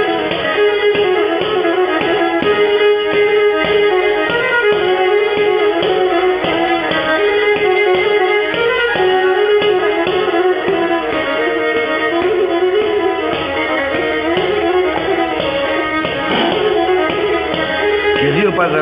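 Pontic lyra (kemençe) played with the bow: a lively folk tune with a steady rhythmic pulse of short bow strokes under a continuous melody.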